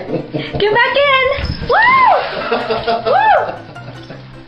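A person's high voice whooping 'woo' twice, each call rising and then falling in pitch.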